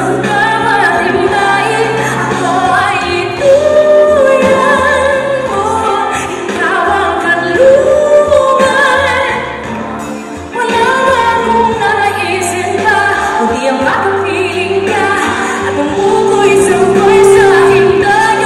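Female pop singer singing live into a handheld microphone over pop accompaniment, her held notes wavering with vibrato. The music dips briefly about ten seconds in, then comes back in full.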